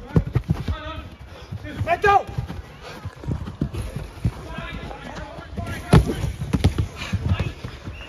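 Running footsteps and ball touches thudding on artificial turf during a five-a-side football game, with players shouting briefly, and one sharp thump about six seconds in.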